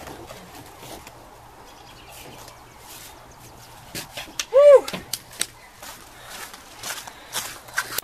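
A woman's single high-pitched whoop of celebration, its pitch rising and then falling, about halfway through, as a high-five is exchanged. Scattered light knocks and footsteps come before and after it.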